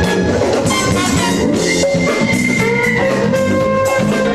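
Recording of a live band playing jazz-funk, with a drum kit and percussion keeping a steady beat under a horn section of saxophone and trumpet. The horns hold a long note from about halfway through.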